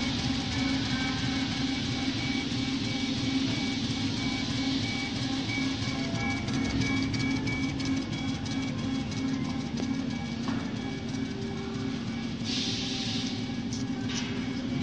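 CO2 laser cutting machine running while it cuts acrylic: a steady mechanical hum with held whining tones that now and then shift pitch, and a brief burst of hiss near the end.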